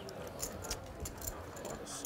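Clay poker chips clicking lightly a few times as players handle their stacks, over a steady room hiss.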